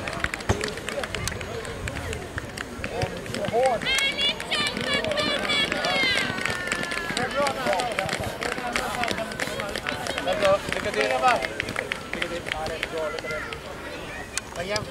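Children's high-pitched voices calling and chattering on an outdoor football pitch, with adult spectators talking in the background. The calls are clearest about four to six seconds in.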